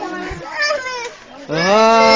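A long, loud drawn-out call that begins about one and a half seconds in, rising briefly and then held at one steady pitch, after a second of scattered talking.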